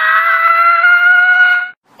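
A voice holding one long high note. It glides up at the start, holds a steady pitch, and cuts off shortly before the end.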